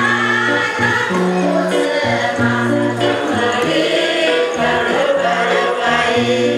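Paiwan village choir singing a traditional ancient ballad in parts, several voices holding long chords that shift every second or so over a low sustained part.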